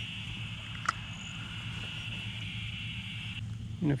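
Steady high-pitched chorus of insects, cutting off about three and a half seconds in, over a low steady hum. A single sharp click comes about a second in.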